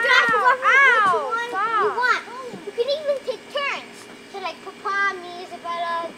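Young children's high voices calling out and chattering while they play, in short exclamations with brief pauses between them.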